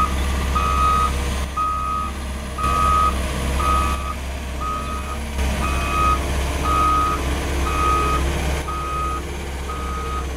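Backup alarm beeping steadily about once a second over a diesel engine running, from a Cat CS54B padfoot soil compactor as it backs up.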